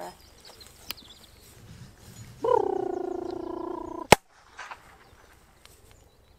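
A single sharp, loud shot about four seconds in, as from a blank training pistol fired for a gundog retrieve. It is preceded by a steady held pitched sound of about a second and a half that the shot cuts off.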